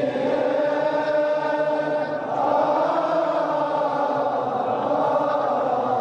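Mournful Arabic chanting of a Shia mourning elegy (nai), sung in long held notes that blend into a steady vocal drone with no clear words.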